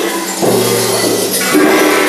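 Children's percussion ensemble playing improvised music: held metallic tones from gongs sit under a dense rushing rattle from a hanging curtain of rattles being swept by hand. The held tones change about half a second in and again near the end.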